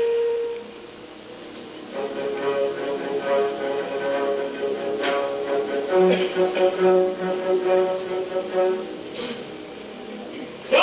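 Theatre pit orchestra from a live stage musical: a held note dies away, then at about two seconds long, dark sustained chords come in, with a pulsing low note beneath them from about six seconds.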